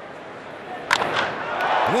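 Ballpark crowd noise at a low level, then a sharp crack of bat on ball about a second in, after which the crowd noise swells.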